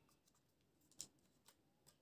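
Near silence with a few faint, short plastic clicks, the clearest about a second in: a plastic landing leg being handled and pushed onto the body of a Syma toy quadcopter.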